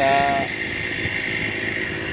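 Knapsack power sprayer's small engine running at a steady speed, a continuous drone with a high whine.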